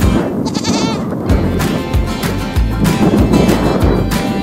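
Background music with a steady beat, with a goat bleating once, wavering, about half a second in.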